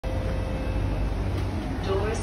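Steady low hum inside a stationary C151B MRT train car with its doors open, from the carriage's air-conditioning and onboard equipment, with a faint steady tone over it.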